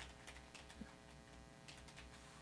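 Near silence: a low steady hum with a few faint computer keyboard keystrokes scattered through it.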